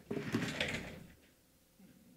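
A brief clatter of handling noise at a lectern microphone, objects shifted or set down, in about the first second, then only faint room noise.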